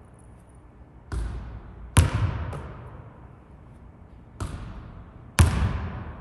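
A basketball bouncing and striking hard surfaces in an echoing gymnasium: a few separate bangs, the loudest about two seconds in and again near the end, each ringing out in a long hall echo.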